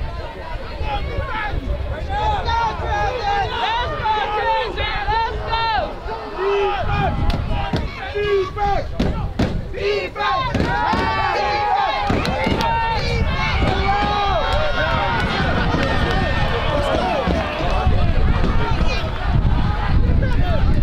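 Many voices shouting and calling over one another from the football sideline, with a few sharp knocks around the middle. A low wind rumble on the microphone comes in near the end.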